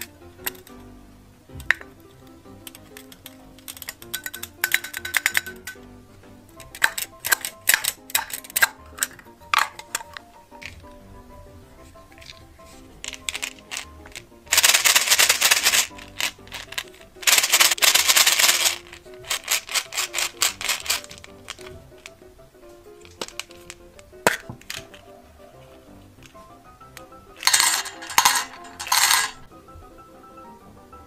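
Hands handling small plastic toy pieces over a metal muffin tin: scattered clicks and clatters, with three loud rasping stretches of a second or two, twice about halfway through and once near the end, over soft background music.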